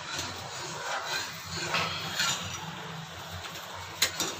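Sugar-and-water syrup boiling in a kadhai over a gas flame: a steady low burner noise with faint bubbling. The syrup is still short of one-thread consistency.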